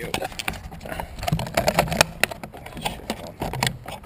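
Handling noise close to the microphone: quick irregular clicks, taps and rattling throughout, with a short laugh at the start.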